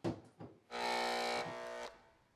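A dryer's power-cord plug pushed into its wall receptacle with a short knock. A second knock follows about half a second in. Then a steady electric buzz runs for about a second, dropping in level partway through.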